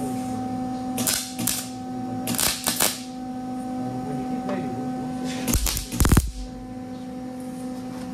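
MIG welding arc crackling in short bursts as a steel steering part is tack-welded. There are a few brief bursts in the first three seconds, then a longer, louder one a little past halfway, over a steady electrical hum.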